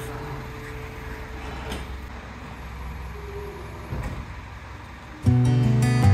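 Quiet outdoor background with a low rumble and a couple of soft knocks, then guitar background music comes in loudly about five seconds in.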